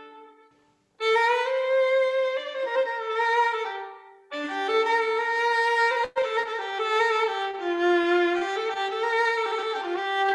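Solo violin playing an improvised taqasim, a free bowed melody in Arabic maqam. A held note fades out, and after a short silence a new phrase starts about a second in. There is a brief break around four seconds and a momentary cut in the sound just after six seconds.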